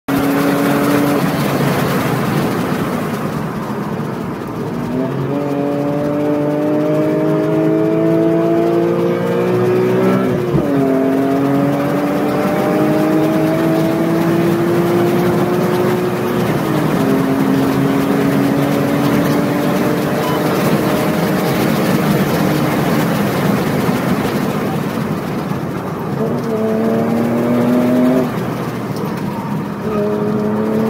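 BMW E46 M3's straight-six engine at full throttle on track, its pitch climbing steadily in each gear with sharp drops at upshifts about 5 and 10 seconds in. Near the end the pitch jumps up with a downshift as the car slows for a corner.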